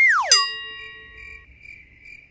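Edited-in comic sound effect: a quick falling whistle-like glide, then a bright ringing chime of several tones that fades over about a second, with a thin high steady tone held beneath it.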